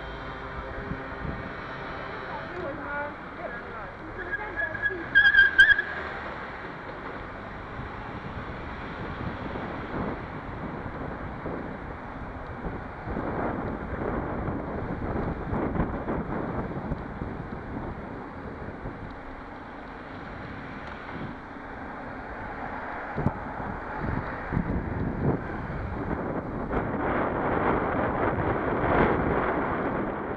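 Wind buffeting the microphone of a moving rider's camera, over the hum of city street traffic. A brief shrill tone sounds about five seconds in, and the wind noise grows louder near the end as speed picks up.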